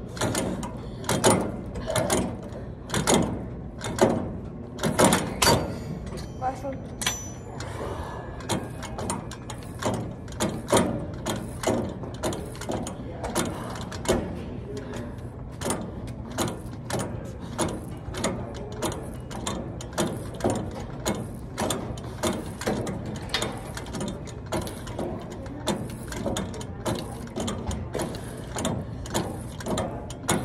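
Gym cable machine clicking and clacking over and over as the cable runs through its pulleys during reps, a few sharp clicks a second that become quicker and more even after the first several seconds.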